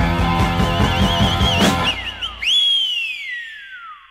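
The end of a rock song. A band with drums plays under a high wavering guitar line, then stops about two and a half seconds in, leaving one last high note sliding down in pitch as it fades out.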